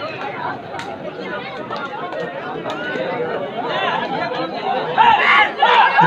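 Crowd of spectators around a kabaddi court, many voices chattering and calling at once, with louder shouts from about five seconds in as a raid gets under way.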